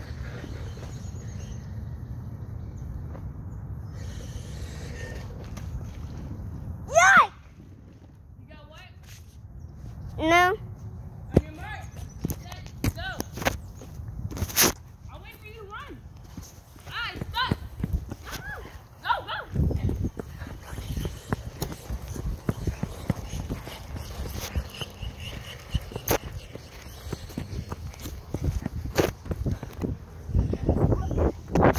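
Handling noise from a phone microphone: rubbing, clicks and knocks as the phone is held and moved, with a steady low rumble at first. Two brief, high, wavering voice sounds come about 7 and 10 seconds in, and there is a heavier thump about two-thirds of the way through.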